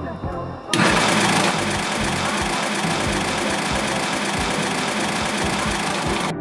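Electric shaved-ice machine switched on, its motor and blade starting suddenly less than a second in and running loud and steady as it shaves ice.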